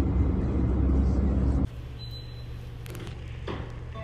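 Car-cabin road noise, a steady deep rumble, which cuts off suddenly about a second and a half in to the quieter sound of a room with a steady low hum and a few faint clicks.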